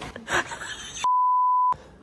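A single steady high-pitched censor bleep, about two-thirds of a second long, starting about a second in, with all other sound cut out beneath it: an edited-in tone masking a word.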